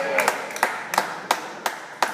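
Table tennis ball bouncing, a series of sharp light clicks about three a second, the last one the loudest.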